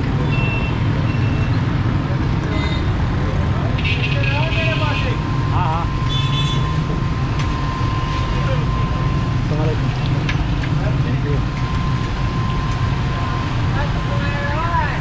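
Steady low rumble of busy street traffic and engines, with short high beeps about four and six seconds in and scattered voices.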